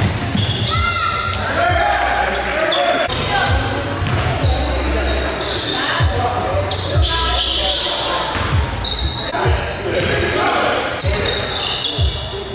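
A basketball bouncing on a hardwood gym floor, irregular thuds about once a second as it is dribbled up court, echoing in the large gym under players' and spectators' voices.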